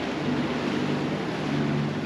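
Steady wind and sea noise aboard a sailing catamaran under way, with wind buffeting the microphone and a steady low hum underneath.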